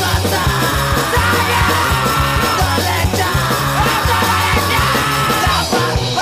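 Hardcore punk band playing at full tilt: fast drums, bass and guitars under a shouted vocal line that breaks off near the end.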